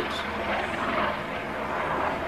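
A steady distant engine drone that swells slightly about a second in.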